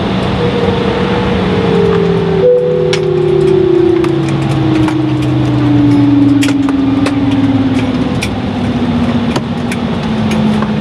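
Embraer E-175's GE CF34 turbofan winding down after shutdown at the gate, a whine that falls steadily in pitch over the whole stretch, heard inside the cabin over steady cabin noise. There is a brief sharp break about two and a half seconds in, and scattered light clicks.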